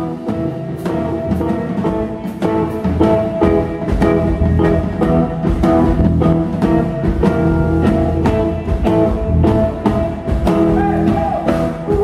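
Live band playing an up-tempo number on electric guitar and drum kit, with a steady drum beat under sustained melodic notes.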